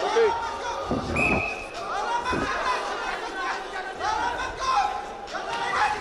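Voices shouting and calling across a large, echoing sports hall, with a short, steady referee's whistle blast about a second in and a couple of dull thuds.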